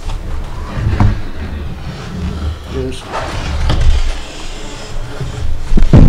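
Knocks and low rumbling handling noise as a wooden boat model is moved about on a table close to the microphone. There is a sharp knock about a second in and the loudest knocks come near the end.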